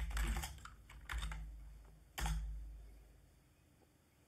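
Computer keyboard keystrokes: a quick run of key clicks at the start, then two single, heavier strokes about a second apart, each with a low thud.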